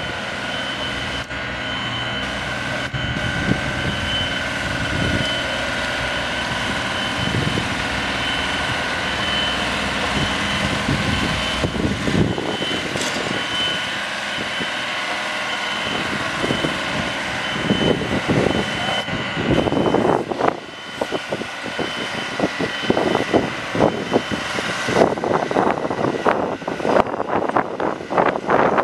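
Construction-site machinery running steadily, with a constant hum and some thin high whining tones. In the last third, irregular louder rumbling surges come in over it.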